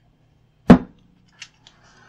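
A hair dryer being picked up: one sharp knock about two-thirds of a second in, then two light clicks, and near the end a faint steady whirr begins.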